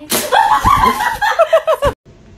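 A sudden sharp slap-like noise, then high-pitched laughter in quick repeated bursts that cuts off abruptly near the end.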